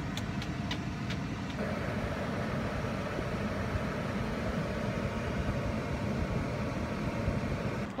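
Steady rumble and cabin noise of a Chevrolet car, heard from inside, with a few faint clicks in the first couple of seconds.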